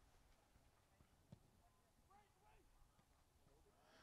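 Near silence, with one faint click about a third of the way in.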